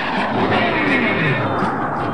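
Cartoon spaceship sound effect as the ship shoots off at high speed: a dense rushing noise with a tone that falls steadily in pitch through the whole two seconds.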